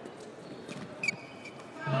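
Play in a badminton doubles rally over a low hall hush: a few light racket hits on the shuttlecock, and a sharper click with a brief high shoe squeak on the court floor about a second in.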